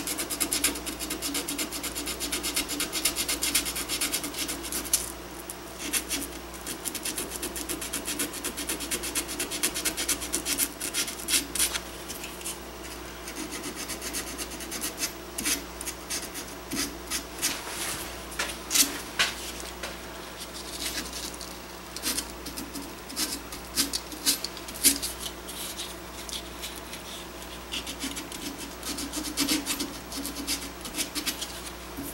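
Abrasive cloth strip worked shoeshine-style around a steel gun barrel: quick, uneven rubbing strokes one after another, cleaning up the metal around freshly soldered tenons. A few strokes come out louder around the middle and later on.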